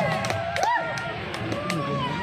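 Voices of a crowd of children and onlookers talking and calling out, with a few short taps.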